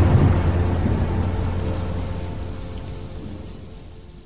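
Thunder-and-rain sound effect under an animated logo: a low rolling rumble with a hiss like rain, fading out steadily over a few seconds.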